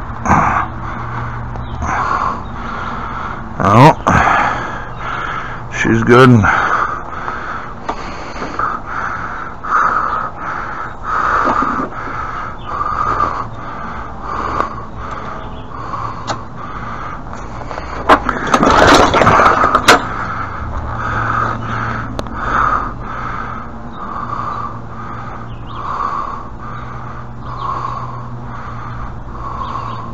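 Recoil pull-starter of a Briggs & Stratton push-mower engine, yanked about four and six seconds in with the cord whirring up in pitch each time; the engine does not catch. The owner suspects a clogged fuel tank, as the primer bulb builds no pressure. A louder, noisier stretch comes around 19 seconds in, and a sound repeats about once a second throughout.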